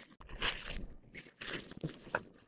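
Faint, irregular rustling and scraping from a fabric waist pack being handled and pulled around to the front.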